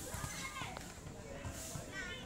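Several young voices calling out and chattering at once around a volleyball game, with a short thud or two of the ball being hit.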